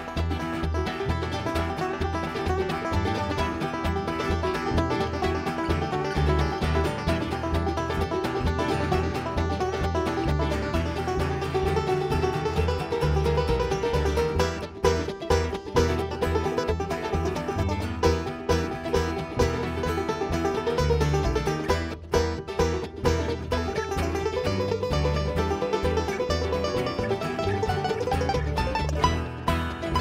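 A live bluegrass band playing an instrumental passage with no singing: mandolin, acoustic guitar and banjo picking together over a steady beat with a strong low end.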